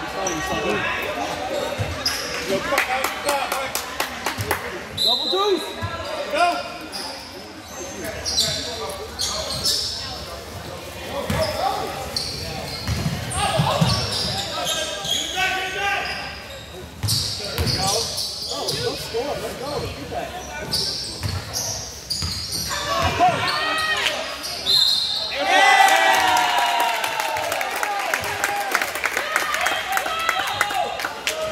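Basketball bouncing and dribbling on a hardwood gym floor during play, amid shouting and calling voices of players and spectators, echoing in the large gym.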